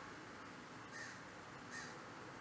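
Two faint, short bird calls about a second apart over quiet room tone.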